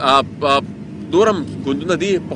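Speech only: a man speaking Pashto in short phrases.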